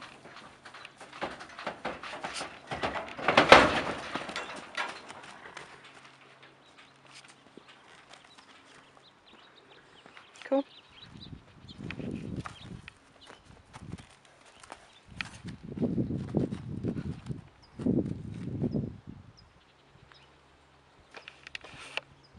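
A horse's hooves knocking and clattering on the hay-bedded floor of a stock trailer as it is led out. The loudest thud comes a few seconds in, as the horse steps down out of the trailer. Softer, lower sounds follow later, as it moves about on dirt.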